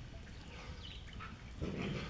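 A dog barking once, briefly, near the end.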